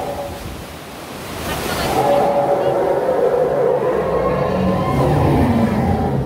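Rushing water and wind buffeting the phone's microphone on a whitewater raft ride, with riders' voices calling out without clear words over it.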